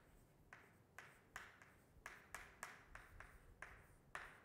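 Chalk writing on a chalkboard: a dozen or so faint, short taps and scratches at an uneven pace as letters are written.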